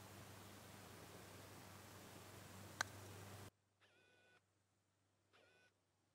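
A single sharp click of a putter striking a golf ball, about three seconds in, over a very faint background hiss. Half a second later the sound drops to dead silence.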